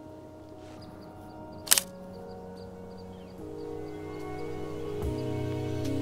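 Background music of held notes, slowly getting louder, with one sharp click about two seconds in: a large-format lens's leaf shutter fired by cable release, opening a five-second exposure.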